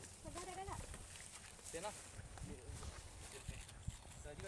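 Faint, indistinct voices of several people talking in the open field, in short bursts, over a low rumble.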